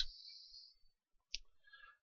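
A single short click a little after the middle, against near silence.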